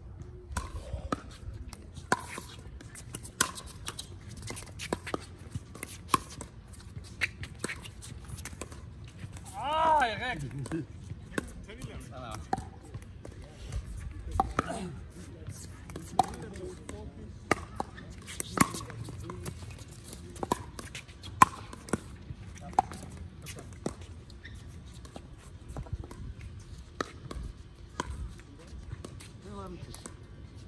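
Pickleball rally: sharp pops of paddles striking a hollow plastic pickleball, coming irregularly about every second or two, with a few louder hits.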